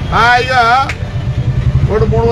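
A man's voice speaks one short phrase, then pauses for about a second. A steady low rumble continues underneath throughout.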